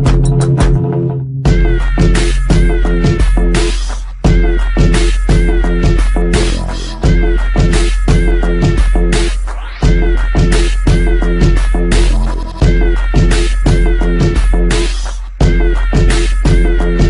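Background music with a steady low bass and a repeating lead of short notes that each slide down in pitch, the phrase coming round about every three seconds. It breaks off briefly about a second in, then resumes.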